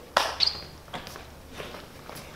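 Footsteps on a stage floor: a sharp knock just after the start, a brief high squeak about half a second in, then a few faint steps.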